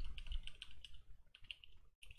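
Computer keyboard typing: a quick, irregular run of light keystrokes.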